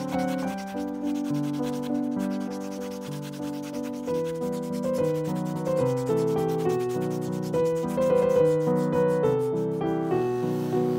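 Repeated rubbing strokes of a clear epoxy resin pendant being polished by hand on a cloth, under background piano music.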